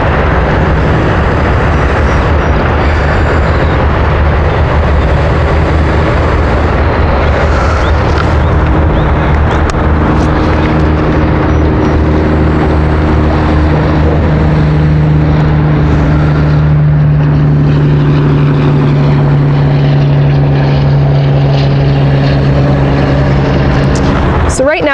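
A loud, steady engine drone. Its pitch steps up about ten seconds in and holds at the higher note.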